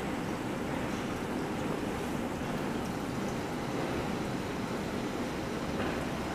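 Gas burner flame running with a steady, even rushing hiss.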